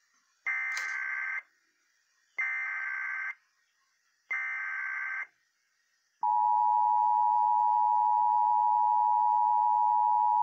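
Emergency Alert System tones for a Child Abduction Emergency (Amber Alert): three SAME header data bursts, each a harsh high-pitched digital screech about a second long with a second of silence between them. About six seconds in, the steady two-tone EAS attention signal starts and holds.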